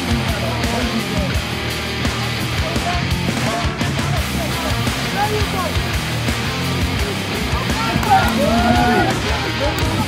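Rock music playing, with a steady bass line and voices heard over it near the end.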